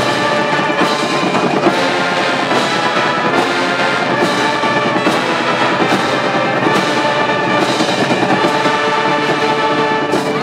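A brass band with drums playing a tune: horns on held notes over a steady drum beat, with a stroke a little under once a second.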